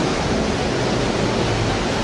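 Steady, loud rushing noise of sea surf, with waves washing continuously.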